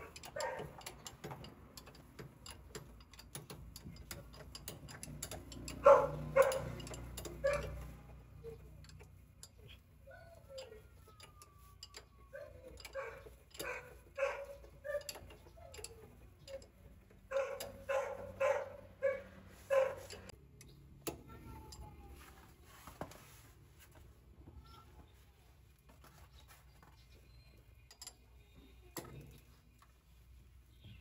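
A dog barking in runs of short barks, loudest about six seconds in, with a few falling whines. Light clicks and clinks of a wrench on the truck's rear-axle brake hardware sound in between.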